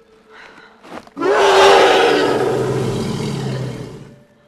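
A Predator's roar from the film's creature sound design: a loud, rough bellow that bursts in suddenly about a second in, drops in pitch, then slowly fades toward the end.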